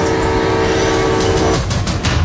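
Diesel locomotive horn sounding a steady chord over the low rumble of the locomotive, cutting off about one and a half seconds in. A few sharp clicks follow near the end.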